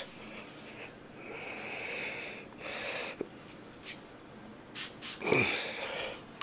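Hard breaths through the nose, a strained exhale about a second in and another near the end, while a Magpul CTR polymer stock is forced along an AR-15's mil-spec buffer tube with a few light clicks as it slides on.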